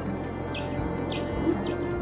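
A small bird chirping three times, about half a second apart, over quiet background music.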